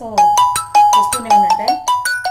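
Mobile phone ringtone: a quick, loud melody of short bright marimba-like notes, about five a second, starting suddenly, with a woman's voice talking underneath at first.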